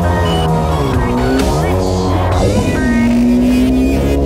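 Electronic background music with a steady beat, mixed with a Yamaha SuperJet stand-up jet ski's two-stroke engine revving, its pitch dipping and rising again about midway.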